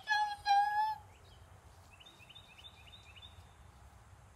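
A high-pitched voice holds two steady notes in the first second, then, from about two seconds in, faint short chirps repeat about four times a second, like a small bird calling.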